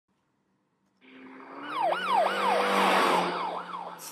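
Police car siren sound effect, a fast yelp whose pitch rises and falls about three times a second over a steady low hum. It comes in about a second in and quickly grows louder.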